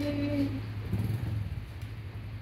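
Yamaha 135LC's single-cylinder four-stroke engine idling with a steady low hum.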